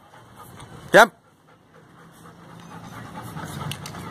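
Black Labrador panting, growing louder toward the end, with one spoken command about a second in.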